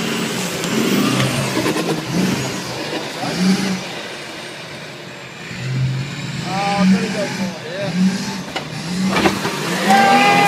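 Off-road 4x4 pickup engine revving in repeated bursts under load as the truck climbs and scrabbles over dirt and roots. Voices shout without clear words in the second half, loudest near the end as a truck tips over the edge of the gully.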